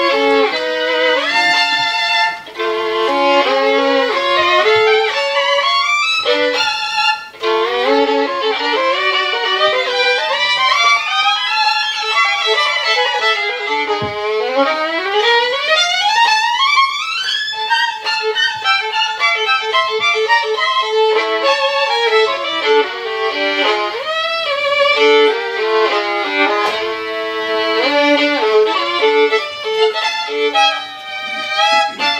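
Solo violin played with the bow: fast passages of changing notes, with a long climb in pitch from low to very high about halfway through.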